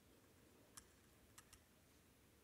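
Near silence: room tone with three faint clicks, the first a little under a second in and two close together just before the end.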